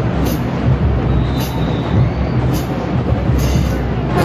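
Marching band drumline playing a heavy groove, with low drum hits and a cymbal crash about once a second, while the horns are silent.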